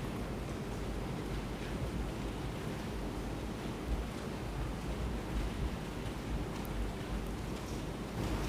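Steady background hiss of courtroom room tone picked up by open microphones, with no speech and only a few faint small knocks.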